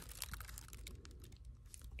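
Faint light clicks and crinkling of small plastic zip bags being handled among the jewelry in a plastic storage bin.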